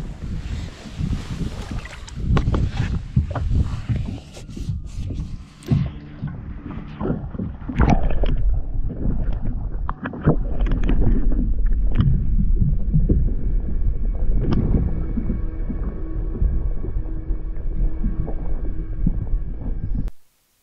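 Water splashing and handling noise as a lake trout is lowered over the side of a boat. About six seconds in the sound goes dull and muffled as the GoPro goes under water, leaving a low underwater rumble of water moving past the housing, with a faint steady hum from about halfway through.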